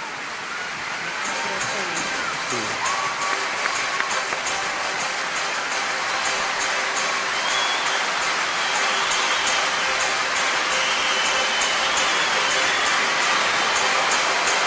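Audience applause and cheering in a hall, growing louder, with voices calling out. Music with a steady beat plays underneath.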